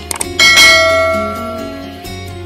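A few quick clicks, then a loud bell ding that rings out and fades over about a second and a half: the notification-bell sound effect of a subscribe animation.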